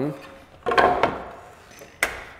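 A wooden baseboard set down on the miter saw table and slid against the fence: a sudden knock of wood about two-thirds of a second in, with a rubbing slide that fades over the next second, and a light tap near the end.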